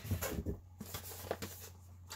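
Packaging handled in a cardboard shipping box: scratchy rustling with a few light clicks and taps as a boxed camera is lifted out, quieter toward the end.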